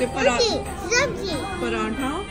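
A young girl's voice, vocalising with high pitch that swoops up and down.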